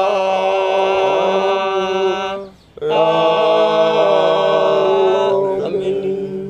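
Group of voices singing a hymn a cappella, holding two long sustained chords. A brief gap comes about two and a half seconds in, and the second chord fades away near the end.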